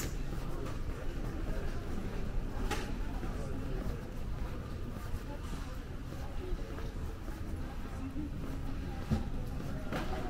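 Airport corridor ambience: indistinct voices of passing travelers over a steady low hum. A single sharp click comes about three seconds in, and a duller knock near the end.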